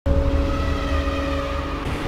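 Cinematic logo-intro sound effect: an abrupt, loud low rumble with several held tones above it, shifting near the end into a dark music sting.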